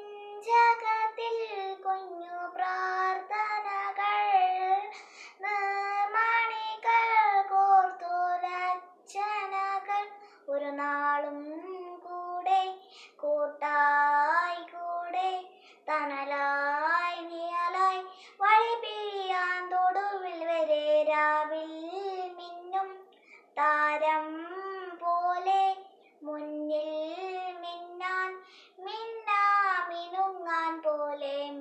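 A young girl singing solo without accompaniment, in sung phrases with short breaths between them.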